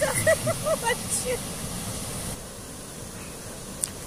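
Water rushing steadily out through the gates of a hand-operated canal lock as the lock chamber drains, with people's voices over it in the first second or so. The rush drops to a quieter, duller level a little over two seconds in.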